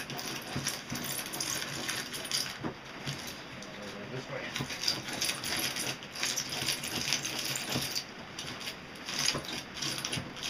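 Hand-cranked homemade styrofoam grinder: a PVC drum studded with screw heads turning against a styrofoam block, giving a continuous rapid crackle of small scrapes and ticks as the foam is chewed into bits.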